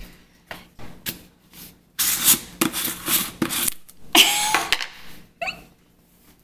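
Plastic supplement tubs being handled: a few light clicks of the scoop, then two stretches of plastic rubbing and scraping as the screw-top lids are twisted, the second with a faint squeak.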